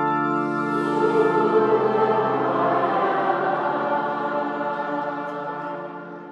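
Church choir singing held, sustained chords that fade away near the end.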